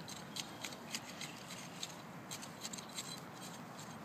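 Faint, irregular scratching and clicking of a hand cultivator's tines working loose garden soil.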